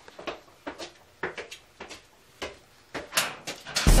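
Footsteps going up basement stairs: a string of irregular knocks, a few a second, in a small room.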